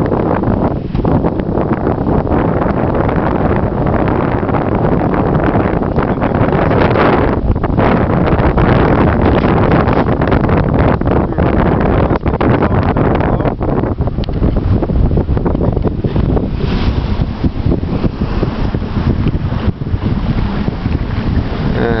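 Steady wind noise buffeting the microphone over water rushing along the hull of a sailboat under sail at about seven knots in a gust.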